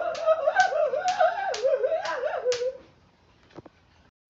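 A voice carrying a wordless, wavering tune, with six sharp clicks at about two a second keeping the beat. It stops about three seconds in.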